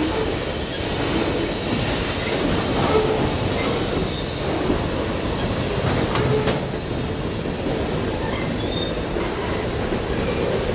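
Freight cars of a slow-moving CSX freight train rolling past over the crossing: a steady rumble of wheels on rail, with a few brief high wheel squeals and a sharp knock about six and a half seconds in.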